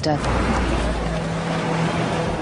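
A car passing close in street traffic, a low engine rumble that fades about a second in, over general street noise. A steady low hum comes in after that.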